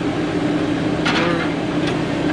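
An engine running steadily, a continuous drone that holds the same pitch throughout.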